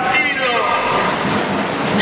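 A man's voice amplified through a PA system, with a steady, dense noise of the hall and crowd beneath it.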